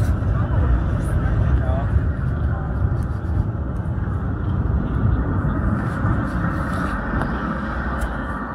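Busy city street ambience: a steady rumble of traffic with passersby talking.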